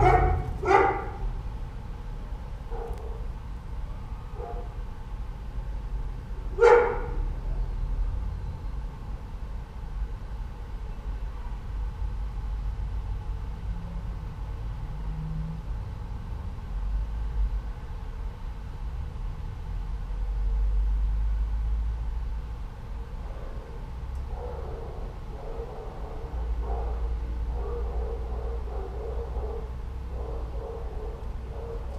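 Dog barking: a short bark just after the start and one loud, sharp bark about seven seconds in, then fainter repeated barking near the end. A steady low rumble runs underneath.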